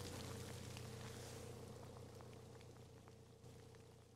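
Near silence: faint outdoor background hiss with a steady low hum and a few faint ticks, slowly fading out.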